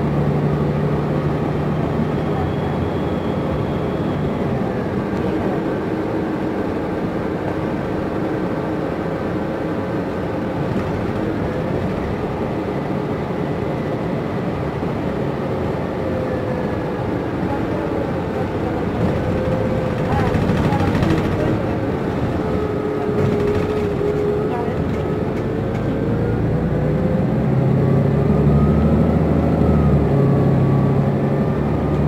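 Inside a moving New Flyer XN60 articulated natural-gas bus: steady engine and drivetrain drone with road rumble. Faint whining tones slide up and down in pitch as the bus changes speed. The low rumble grows louder near the end as the bus picks up speed.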